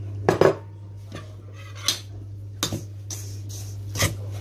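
Sharp clinks of kitchenware against a stainless-steel mixing bowl as dry semolina is tipped in. There are five or six knocks, with the loudest cluster about half a second in and the rest spaced out after it.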